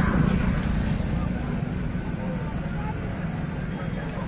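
Steady low rumble of outdoor noise, loudest in the first second, with faint voices of a gathered crowd in the background.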